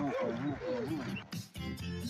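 A voice wails up and down in pitch, several swoops in a row. About 1.3 seconds in, the closing theme music cuts in abruptly with a keyboard and a steady beat.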